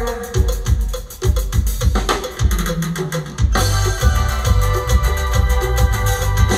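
Live band playing pirekua dance music: a drum kit keeps a steady beat, and about three and a half seconds in a fuller sound of held chords and bass comes in.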